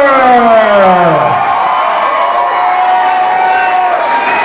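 A fight crowd cheering, with long drawn-out yells: one falling whoop in the first second and a half, then a high yell held on one note to the end.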